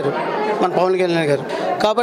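Only speech: a man talking into a handheld interview microphone in a room.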